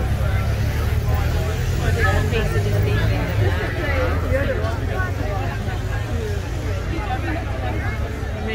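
Police motorcycles passing at low speed, their engines a low steady hum that is loudest over the first three seconds or so and then fades, under the chatter of a crowd.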